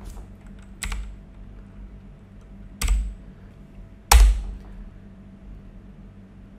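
Three separate clicks of computer keyboard keys, about a second, three seconds and four seconds in, the last the loudest.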